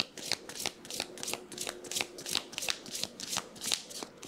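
A deck of divination cards being shuffled by hand: a rapid run of crisp card clicks, several a second.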